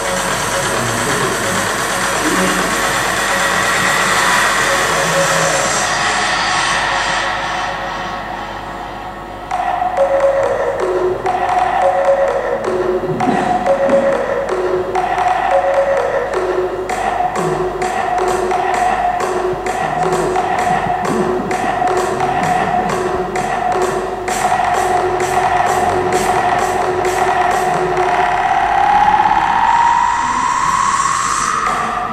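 Music: one piece fades out about eight seconds in, and another starts a second or so later with a steady ticking beat and held melody notes. A rising tone comes near the end.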